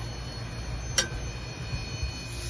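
Sliced mushrooms being stirred with a metal utensil in a stainless steel skillet, with one sharp metallic clink of utensil on pan about a second in.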